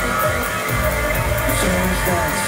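An industrial rock band playing live: electric guitar and synthesizer over a steady beat, heard from the crowd.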